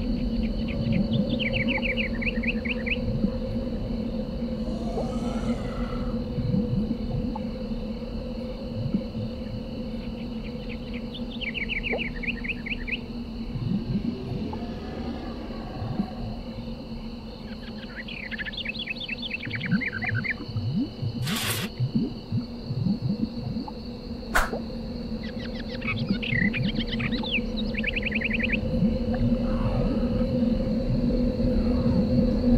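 Ambient background soundtrack: a steady low drone with sustained tones, over which short groups of rapid bird-like chirps recur every several seconds. A brief hiss about two-thirds through and a sharp click a few seconds later.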